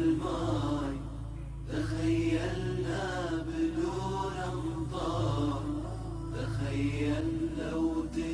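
A male voice singing a nasheed in long, wavering chanted lines over a low steady drone.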